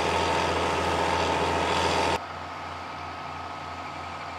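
John Deere 6920S tractor's engine running steadily as it drives a slurry stirrer. About two seconds in the sound drops abruptly to the quieter, steady drone of the 170-horsepower engine on the slurry pump unit.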